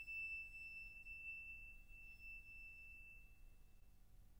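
Near silence in a pause in the music, with a faint, steady high-pitched tone that fades out just before the end.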